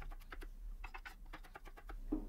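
Knife chopping quickly on a cutting board: quick runs of light taps with short pauses between them.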